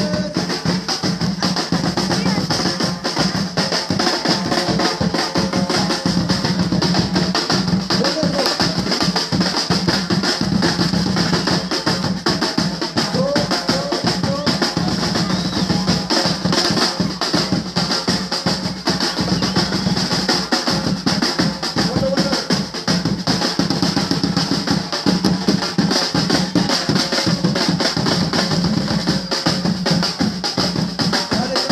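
Batucada percussion ensemble drumming a loud, dense samba rhythm without a break, many drums struck at once.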